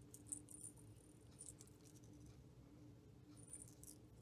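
Very quiet handling sounds of a small metal jingle bell and baker's twine being threaded through it: a few faint tinkles and ticks, the first about half a second in and another just before the end, over a low steady room hum.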